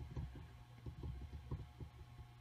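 Faint, irregular low thumps and soft handling noise from hands working a beading needle and thread through small beads on a bead mat.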